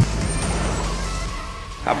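Edited transition sound effect: a hissing rush of noise that starts suddenly and fades away over about two seconds, like a vehicle sweeping past.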